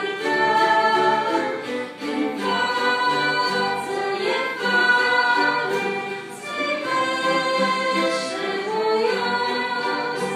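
Choir singing with orchestral accompaniment: voices holding long notes in phrases, with short breaths between phrases about two and six seconds in.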